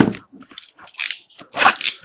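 Trading cards and their packaging handled right at the microphone: irregular rustling and crinkling in short bursts, with a sharp one at the start and the loudest near the end.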